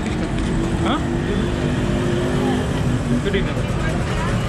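Steady street traffic noise with a motor vehicle engine running close by, and people's voices in the background.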